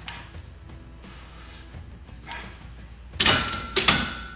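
Barbell with no plates being set back into the rack's J-hooks near the end: two metal clanks about half a second apart, followed by a thin ringing tone.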